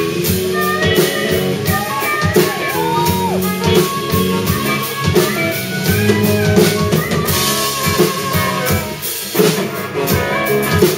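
Live band instrumental break: a harmonica plays the lead, its notes bending up and down, over electric and acoustic guitars, bass and a drum kit.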